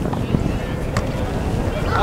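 Wind rumbling on the microphone under distant voices calling out across a soccer field, with one short sharp knock about a second in.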